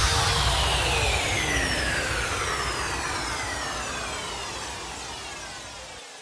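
Closing effect of an electronic dance remix: a hissing sweep with many falling pitch glides, fading out steadily.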